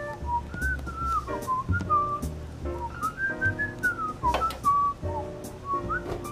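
A person whistling a jaunty tune, one wavering melodic line, over light background music with a bass line.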